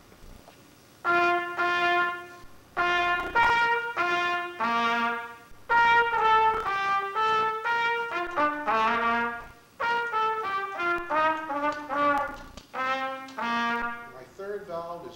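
Solo trumpet playing quick phrases of bright notes, starting about a second in and broken by several short pauses. The trumpet is the Chesterhorn, whose valves are pulled down by touch pads and compressed nitrogen.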